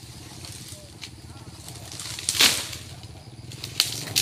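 Oil palm harvesting: a loud rustling crash about halfway through, like a cut frond or bunch coming down through the leaves, with a sharp snap near the end, over a steady low engine hum.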